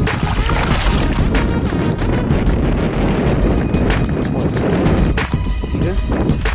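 Music playing over loud water splashing and wind noise as a large sturgeon is held thrashing alongside the boat's hull.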